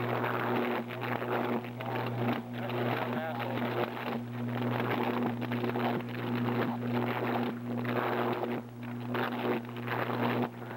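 High-voltage power-line fault arcing and burning at ground level: a loud, steady electrical buzz with dense crackling throughout.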